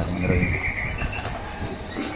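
Crisp fried tumpi crackers being bitten and chewed, with a few sharp crunches about a second in. A short high steady tone sounds near the start.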